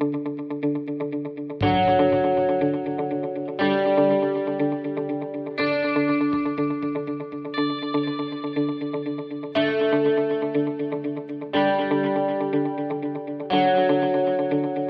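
Background music with a picked guitar playing through effects, a new chord struck about every two seconds.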